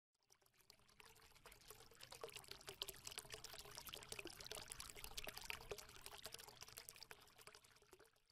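Very faint trickling, crackling sound effect under a logo intro: a dense patter of small ticks that builds up about two seconds in and thins away near the end.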